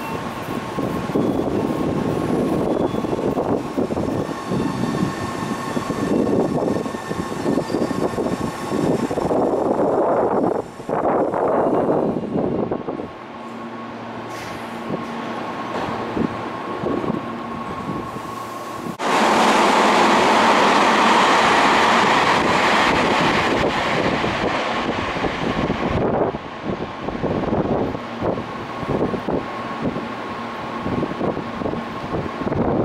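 Tobu electric commuter trains at a station platform: rumbling with a steady electric hum. About two-thirds of the way through, a loud, even rush of noise runs for about seven seconds and then cuts off abruptly.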